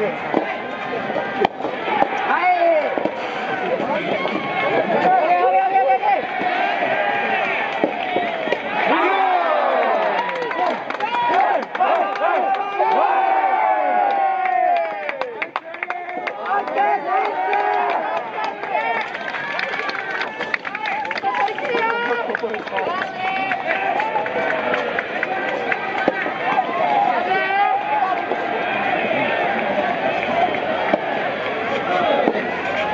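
Many voices shouting and cheering over one another without a break, team supporters calling out through a soft tennis point, with a sharp knock of a racket on the soft rubber ball about a second and a half in.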